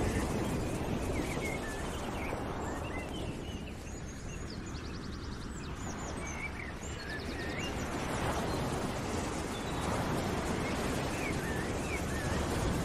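Outdoor ambience of small birds chirping, with a few quick trills, over a steady rushing noise that swells and eases every few seconds.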